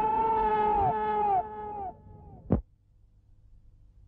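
A man's long drawn-out scream, held on one high pitch, repeating as fading echoes that each fall off in pitch at the end. A single sharp crack comes about two and a half seconds in, then near quiet.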